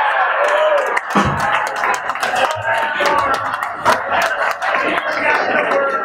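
Crowd of people chattering and cheering with scattered hand claps, applause for a live band's song that has just ended.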